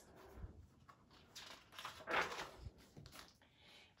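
Faint rustle of a large picture book's paper page being turned, with a few soft scuffs, the clearest a bit past the middle.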